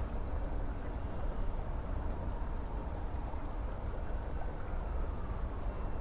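Steady flow of a shallow, rocky creek.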